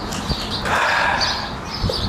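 Birds chirping over steady outdoor background noise, with a brief rush of noise about a second in.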